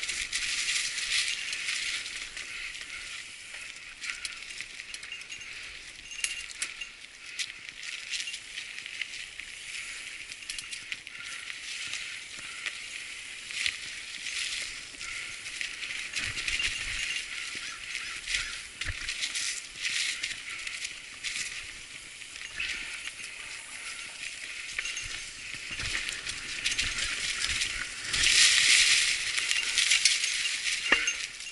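Mountain bike rolling over a trail covered in dry fallen leaves: tyres crackling through the leaves while the chain and frame rattle and clink with many sharp clicks over the bumps, louder for a couple of seconds near the end.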